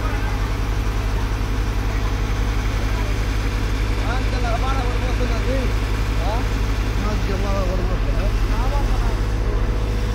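Heavy construction machinery's diesel engine running steadily, a low drone with a fast, even throb, as it works to lift and set a precast concrete box.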